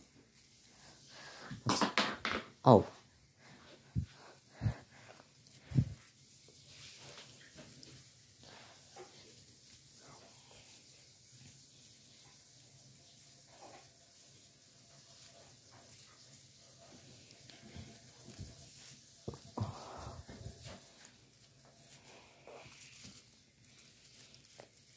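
Faint rustling of artificial Christmas tree branches as they are handled and spread out by hand, with a few sharp clicks a few seconds in.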